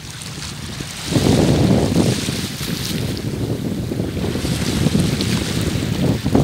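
Wind buffeting the phone's microphone, a low rumble that grows loud about a second in, over a fainter hiss of small sea waves washing on a rocky shore.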